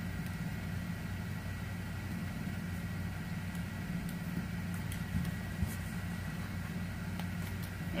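Steady low mechanical hum with a faint high-pitched whine, most likely a fan or air conditioner running in the room, with a couple of faint ticks a little past five seconds in.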